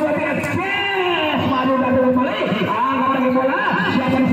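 A voice calling out in drawn-out, wavering tones, with one long falling call about a second in.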